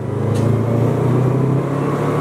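Subaru WRX's turbocharged flat-four engine running as the car drives, heard from inside the cabin: a loud, steady low drone that holds its pitch.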